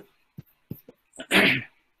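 A man coughs once, a single sharp, noisy burst about a second and a half in, preceded by a few faint short clicks.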